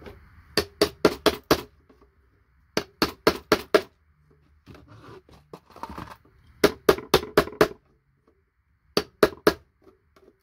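Hammer striking a chisel held against a circuit board, knocking IC chips off. Sharp metallic taps come in four quick bursts of about five strikes each, with short pauses between.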